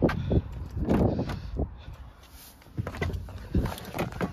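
A person breathing hard and fast in and out through a spirometer mouthpiece during a lung function test, in repeated rapid, forceful breaths.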